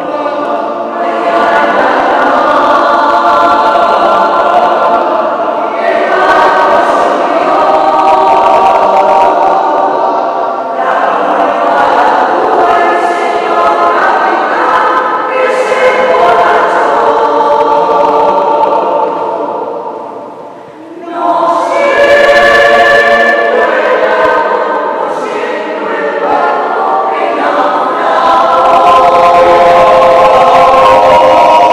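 Mixed choir of men and women singing a cappella in long, sustained phrases with short breaks between them. About two-thirds of the way through it nearly stops, then comes back in loudly.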